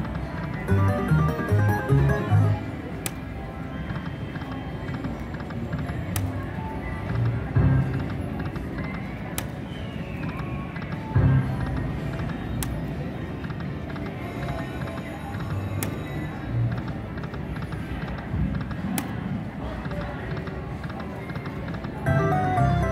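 Aristocrat Buffalo video slot machine spinning its reels again and again, playing its electronic game sounds and tunes. A sharp click comes about every three seconds, one per spin, over the casino floor's background noise.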